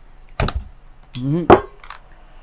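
A few sharp knocks and clicks from handling an angle grinder and its parts, the loudest about one and a half seconds in, with a brief voiced sound just before it.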